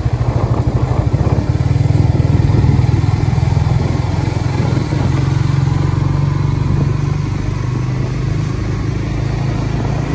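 Suzuki GSX-R150's single-cylinder engine running steadily while the motorcycle is ridden, heard from the rider's seat, a little louder about two seconds in and easing off after about five seconds.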